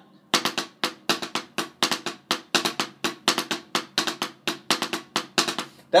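Wooden drumsticks playing the single drag rudiment on a rubber practice pad set on a drum: quick grace-note pairs followed by single taps in an even run of sharp strokes, about four to five a second. This is a straight sound, without the intended lilt.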